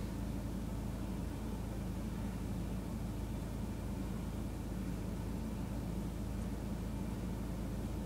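Steady low hum with a faint hiss inside the cabin of a stationary BMW X5, unchanging throughout.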